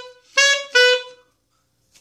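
Alto saxophone playing short detached notes at one pitch: the end of one note, then two more in quick succession, the second fading out.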